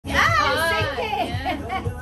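High, excited voices over music with a steady beat of about two thumps a second.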